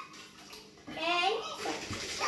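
A brief lull, then a young child's high-pitched voice vocalizing, without clear words, from about a second in.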